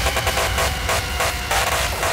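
Full-on psytrance music: an electronic dance track with a heavy bass and a fast, even synth rhythm.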